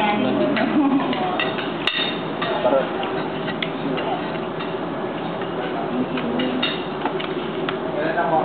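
Cutlery clinking against plates and dishes, many short clinks scattered throughout, over a steady murmur of diners' chatter.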